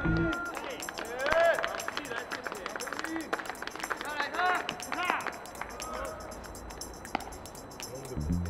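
Baseball players' voices shouting and yelling across the field in drawn-out calls, loudest about a second and a half in and again around five seconds, over a steady patter of sharp ticks.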